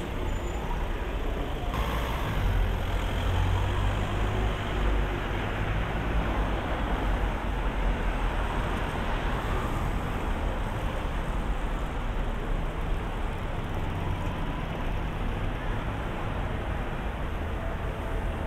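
City street traffic: cars passing on the road close by, a steady noise with a low rumble that swells in the first half.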